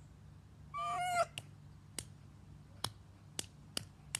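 A brief, high-pitched, wavering cry about a second in, followed by a handful of sharp clicks spaced roughly half a second to a second apart.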